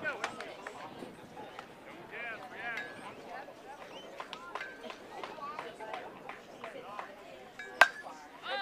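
Scattered voices of players and spectators calling across a ball field, then near the end a single sharp crack as a baseball bat hits the pitched ball.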